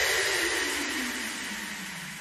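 End of an electronic dance track: a noise sweep falling in pitch, fading out steadily.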